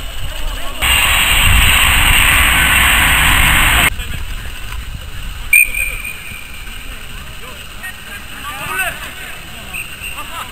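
Outdoor youth football match. A loud rushing noise lasts about three seconds and cuts off suddenly, a short referee's whistle blast comes a little past halfway, and players shout near the end.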